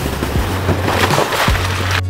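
Background music with a steady low bass, over the rushing noise of a Toyota Tacoma's tyres driving through wet slushy snow. The tyre noise swells about a second in.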